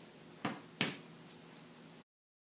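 Two sharp clicks about a third of a second apart, over faint room tone.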